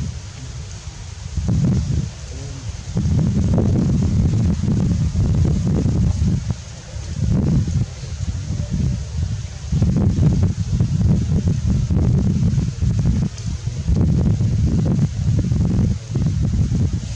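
Wind buffeting the microphone in gusts: a low rumble that swells and drops every few seconds, with brief lulls between.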